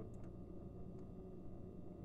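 Quiet room tone: a steady low hum with two or three faint clicks.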